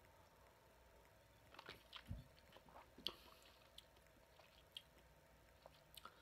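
Near silence, with faint small clicks and mouth sounds of a person sipping and swallowing a drink from a glass, and a soft low knock about two seconds in.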